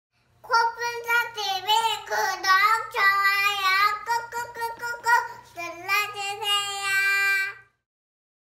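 A little girl singing a short sing-song jingle in a high voice, asking listeners to subscribe and like. It ends on a long held note shortly before the end.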